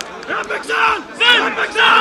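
Several men shouting and yelling at once on a football pitch, loud overlapping calls that come in bursts.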